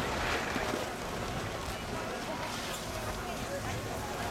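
Faint, distant voices of people on a ski slope over a steady low outdoor rumble.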